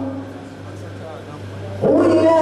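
A pause in a man's chanted Qur'an recitation, heard through a microphone: a steady low hum and faint room noise. His melodic chanting starts again just before the end.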